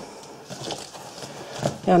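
Faint rustling of twine being tugged at as a bow on a cardboard box is worked loose, with a soft scrape or two.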